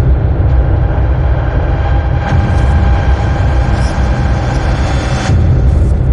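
Deep, loud rumbling intro sound effect with faint held tones above the rumble.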